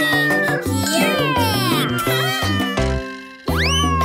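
Cartoon cat meowing over upbeat children's song music. The music drops out for a moment about three seconds in, followed by a steep rising swoop.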